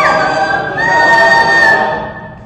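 Mixed choir of women's and men's voices singing, holding long sustained notes with a high held line on top; the phrase eases off near the end.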